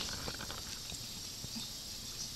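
Quiet room tone: a steady low background hiss with a few faint small ticks and no distinct event.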